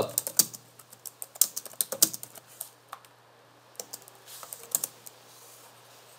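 Computer keyboard typing: quick key clicks in uneven runs, a short pause about halfway, then a few more keystrokes before it goes quiet near the end.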